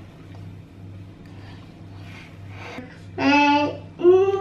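A quiet steady low hum, then near the end a voice holds a single steady note for about half a second.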